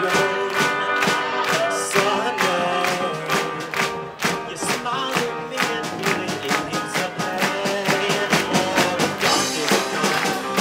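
Live band playing a song with electric guitars, drum kit and keyboard, over a steady drum beat.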